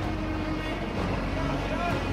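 A motor yacht's engine running with a steady low hum, with indistinct voices over it.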